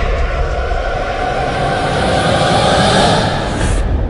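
Intro-animation sound effect: a loud, dense rumble mixed with hiss that swells up to the logo reveal. Near the end the hiss cuts off, leaving a rumble that begins to fade.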